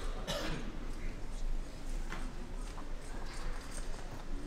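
Murmur of a crowd talking in a large, echoing church, with a few sharp knocks.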